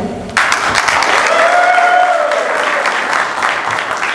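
Audience of seated soldiers clapping in a hall, the applause breaking out about half a second in. A single drawn-out tone rises and falls above it in the middle.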